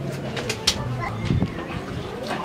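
A man's low voice making two short, drawn-out hums or moans, with a couple of sharp clicks in between.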